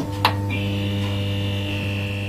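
Electrical mains buzz of an illuminated lightbox sign switched on: a click about a quarter second in, then a steady hum with a thin high whine joining about half a second in.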